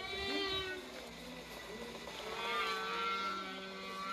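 Whale song: two long calls whose pitch wavers and glides, the first in the opening second and the second drawn out from about a second and a half in to near the end.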